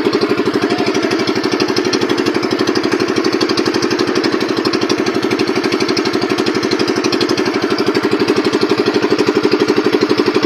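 Outrigger pumpboat's engine running steadily with an even, rapid pulse.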